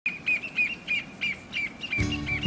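A small bird chirping: a short, repeated chirp, about three a second.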